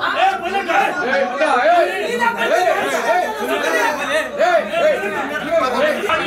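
Many men talking loudly over one another in a crowded room: the overlapping voices of a heated argument.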